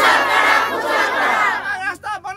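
A crowd of protesters shouting a slogan together in one loud, sustained cry that falls away near the end.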